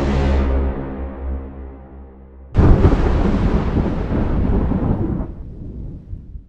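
Cinematic intro sound design: a low sustained musical drone fading away, then a sudden loud boom hit about two and a half seconds in that rumbles and dies away over about three seconds.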